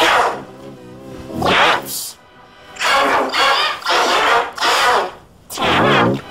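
Loud wordless yelling in repeated outbursts, pitch-shifted into several stacked copies by a 'G Major' edit effect, so the voice sounds like a harsh chord.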